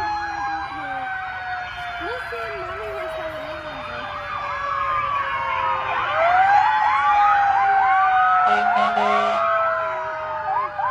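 Emergency vehicle sirens sounding together as vehicles approach: one long wail falling slowly in pitch throughout, joined by rapid rising-and-falling yelps that grow louder from about six seconds in.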